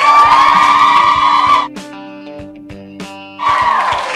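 Loud, high-pitched held cries from the audience, like a long shriek or 'woo', for about the first second and a half. A quieter steady held tone follows, then the loud cry starts again near the end.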